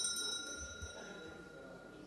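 A single metallic ring, like a small struck bell, made of several high tones that fade away steadily.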